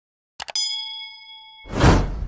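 Subscribe-animation sound effects: a quick double mouse click, then a notification-bell ding that rings for about a second, then a rising whoosh that swells to the loudest point near the end.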